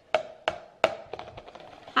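Hard plastic knocking and clacking, about five sharp, hollow-ringing knocks in two seconds, as a plastic cup and ice-lolly moulds are handled and set down on the kitchen counter.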